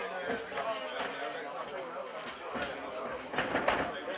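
Indistinct voices of onlookers and cornermen around a fight cage, with a few sharp knocks. The loudest knock comes near the end.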